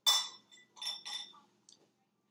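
Short plastic clinks and taps as weighing boats are handled on a small digital scale: a sharp one at the start, then a softer pair about a second in.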